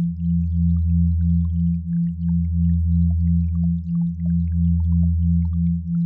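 Synthesized sine tones of a binaural and isochronic beat track: a low tone pulsing on and off about three times a second over a deeper steady hum that dips briefly every two seconds.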